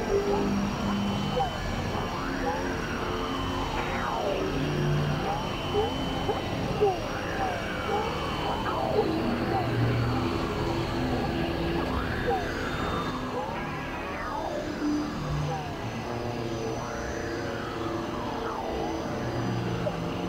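Experimental synthesizer noise music: arching pitch sweeps that rise and fall every two to three seconds, over a noisy bed with short held low notes.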